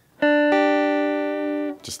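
Clean electric guitar with some reverb picking two single notes: the B string at the third fret (D), then, about a third of a second later, the high E string at the third fret (G), which rings for over a second before it stops.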